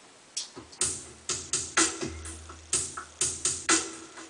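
Electronic drum beat from a Korg M50 drum-kit patch (the Psycho Chill Kit), played from the keyboard. It starts about a third of a second in as an uneven pattern of sharp snare- and hat-like hits over deep kick thumps, with a longer low boom near the middle.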